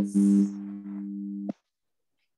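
A steady electronic tone with a low buzzy pitch and a brief hiss near the start. It cuts off suddenly about one and a half seconds in, leaving dead silence.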